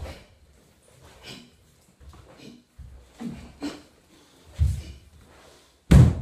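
A karateka performing a kata: bare feet thudding on a wooden floor and short, forceful breaths between moves, with one loud, sharp crack just before the end.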